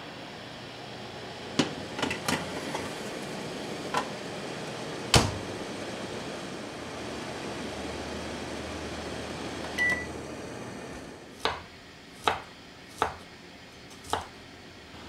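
A countertop oven-microwave being loaded and started: a baking tray clatters in, the door shuts with a loud clack, and a short single beep sounds as it is set going. Near the end come three or four knocks of a kitchen knife slicing garlic on a wooden cutting board.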